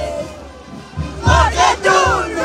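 Dense festival crowd shouting and singing right around the microphone, over low drum thuds about once a second. The voices are quieter at first and burst in loudly about a second in.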